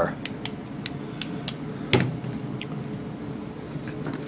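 Light clicks and taps of hands handling a model passenger car in its foam packing, about half a dozen in the first two seconds, with a brief louder knock about halfway through over steady room hiss.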